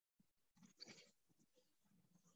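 Near silence: room tone, with a few faint, short soft sounds a little under a second in.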